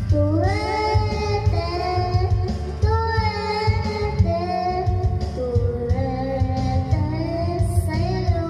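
A child singing through a microphone and loudspeakers over a karaoke backing track with a steady bass, holding notes with vibrato.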